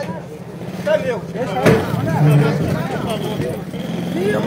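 Several voices talking and calling out over one another in a street argument, over the steady low hum of a running vehicle engine. A single sharp knock comes near the middle.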